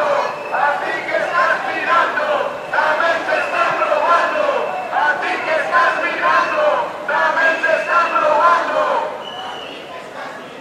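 A crowd of marchers chanting a slogan in unison, the same phrase repeated about every two seconds; the chanting drops away near the end.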